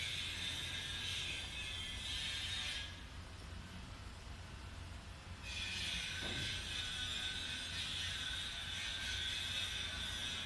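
Construction work heard through an open window: a steady high-pitched mechanical whine that stops about three seconds in and starts again some two and a half seconds later.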